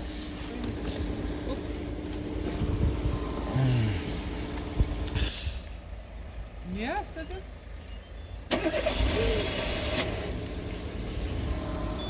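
A car engine running with a steady hum that stops about five seconds in. About three seconds later it is started again: a sudden, louder burst of cranking that settles into running. The engine's multi-rib drive belt has shredded and wound between the pulleys.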